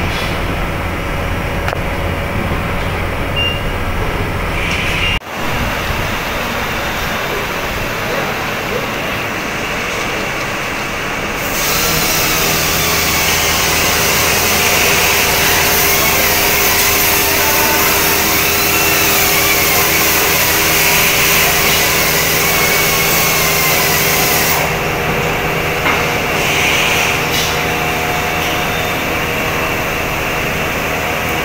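Steady factory machinery noise: a constant hum with several held tones, broken by a brief drop-out about five seconds in. From about twelve seconds to about twenty-five seconds a loud, steady hiss joins it.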